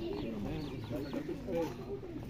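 Indistinct chatter of several men talking at once, with overlapping voices and no single clear speaker.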